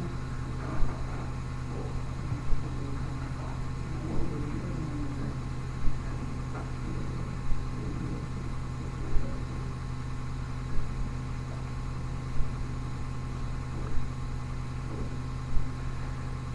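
Steady low electrical hum from an old digitised recording, with a soft thump repeating very evenly about every one and a half seconds.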